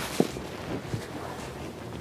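A person climbing into a car's rear seat: low rustling movement, with one short knock about a quarter of a second in.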